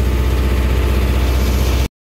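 Farm tractor engine running steadily, heard from inside the cab, a low even drone with a regular firing pulse. It breaks off in a short silence near the end.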